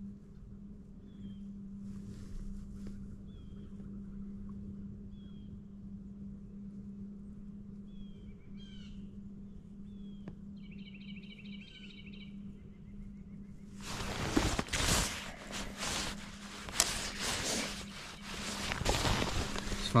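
Birds chirping now and then, with one short trill, over a steady low hum; about two-thirds of the way through a loud, irregular rushing noise comes in and stays to the end.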